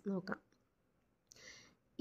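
A voice says 'It is', then near silence with a single faint, short hiss about a second and a half in.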